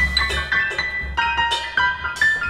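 Digital piano and drum kit playing together live: a quick run of bright piano notes over regular cymbal strikes and drums.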